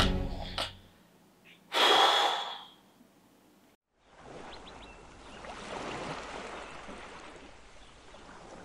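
A single sharp gasp, a man's quick loud intake of breath, about two seconds in. From about four seconds on comes a quiet, steady wash of calm sea.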